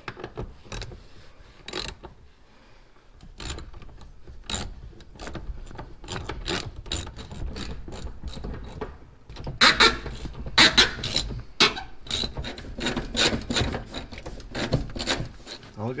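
Hand ratchet clicking in quick runs as the bench-seat floor bolts of a 1977 Chevy C10 are loosened, with rubbing and scraping of the tool and seat against the carpet. The clicks come in short bursts and are loudest about ten seconds in.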